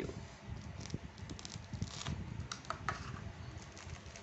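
Plastic mailer wrap of a parcel being handled and torn open by hand: faint rustling and scratching with scattered light clicks, busiest around the middle.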